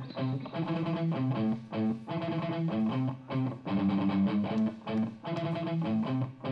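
Rock band playing an instrumental song intro, led by electric guitars strumming a repeated chord riff in short phrases that break off roughly once a second.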